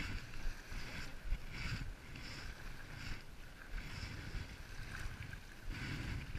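Wind buffeting the microphone, with irregular small splashes of shallow water at the shoreline.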